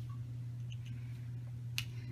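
Handling of a plastic makeup compact and brush: a few faint ticks, then one sharp click near the end. A steady low hum runs underneath.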